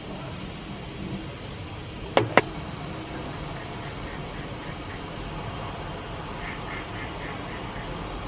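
Steady outdoor background noise, broken a little over two seconds in by two sharp clicks in quick succession. Later comes a short run of about six quick, high notes.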